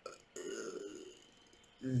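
A man's brief, quiet voiced sound from the throat, under a second long, followed by him starting to speak near the end.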